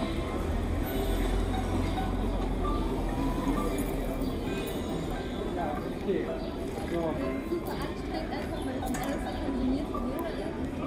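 Busy street ambience: indistinct voices of people nearby over a steady low rumble, with occasional light clinks.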